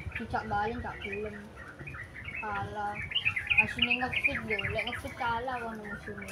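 Small birds chirping in quick, repeated high notes, with people talking quietly in the background.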